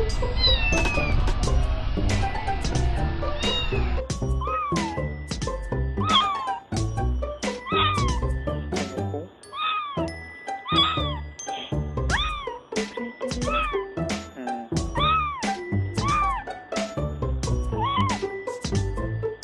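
Kittens meowing over and over: short, thin, high calls that rise and fall in pitch, about one a second, with a steady musical soundtrack underneath.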